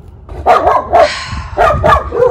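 Dog barking repeatedly, a quick run of loud barks starting about half a second in.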